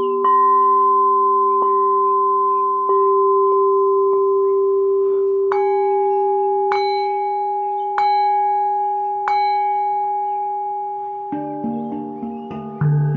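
Singing bowls struck at a steady pace, about once every second and a half, each strike leaving a long ringing tone. A lower-pitched bowl is struck about four times, then from about halfway a higher-pitched bowl is struck four times. In the last second other, lower notes join in.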